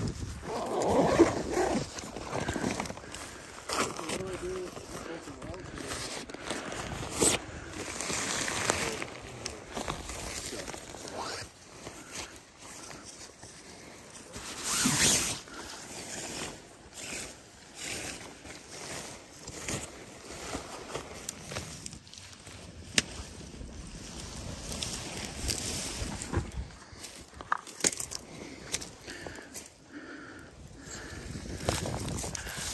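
Camping gear being handled: rustling as a backpack is searched and a nylon tent is unpacked and pitched, with irregular clicks and knocks of the sectioned tent poles.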